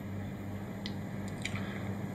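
Pause in speech: steady low electrical hum and room noise from the microphone, with a few faint small clicks around the middle.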